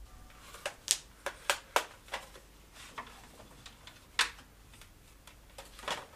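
Handling noises: an irregular run of sharp clicks and knocks as objects are picked up and moved about, loudest about a second in and again about four seconds in.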